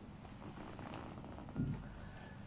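Hands massaging a bare leg: soft skin-on-skin rubbing as the palms slide and knead up the calf, with a short low thump about one and a half seconds in.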